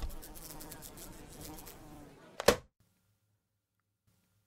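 Housefly buzzing, cut off by a single sharp slap about two and a half seconds in.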